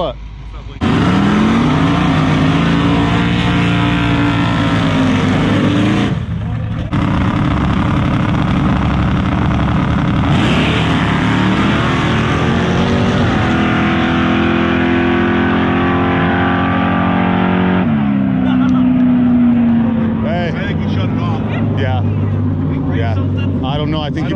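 Drag race car engines running loud at high revs, starting suddenly about a second in and held for long stretches. The pitch climbs slowly and then falls away about three quarters of the way through.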